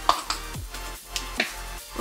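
Background electronic music: a kick drum with a falling thud about twice a second, with a few sharp snapping clicks over it.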